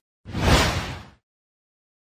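A whoosh transition sound effect about a second long, swelling up and then fading away.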